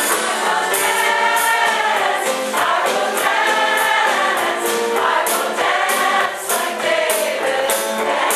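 Mixed choir singing live with full voices, over a regular beat of sharp accents.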